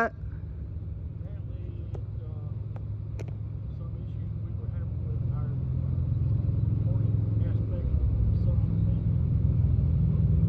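A motor vehicle's engine running close by, a low steady rumble that grows louder over the second half, with faint distant speech.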